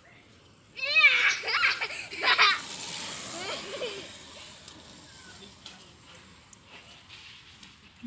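A young child's high-pitched voice calling out, with no clear words, starting about a second in and lasting a couple of seconds, followed by a shorter, weaker call; after that only faint small ticks and rustles.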